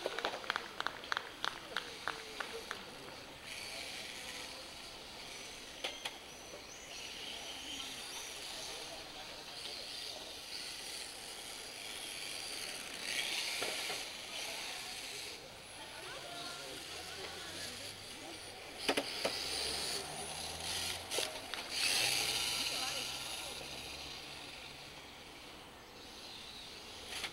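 Electric 1/10-scale RC touring cars racing on a track: a high-pitched motor whine and tyre hiss that swells and fades as cars pass, loudest twice in the second half. A quick run of about a dozen clicks comes in the first two to three seconds.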